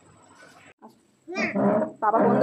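A young child's voice: a short, loud, high-pitched cry that starts high and drops, about a second and a half in, after faint room noise.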